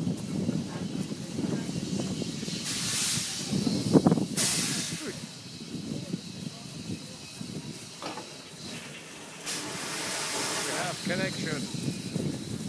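Small steam tank locomotive at a station platform, releasing steam in hissing bursts: one about three seconds in, another just after four seconds, and a longer one near the end. A single sharp clank about four seconds in is the loudest sound.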